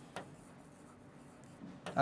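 Faint scratching and tapping of a stylus writing on an interactive touchscreen board, with one light tap a moment in.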